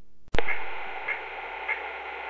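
A sharp click, then the steady hiss of a telephone-line recording, muffled and cut off above the phone band, with a faint blip about every half second.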